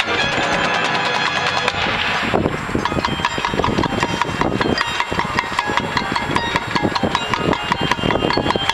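High school concert band playing. From about two and a half seconds in, the music turns to a run of short, detached repeated notes in a steady rhythm.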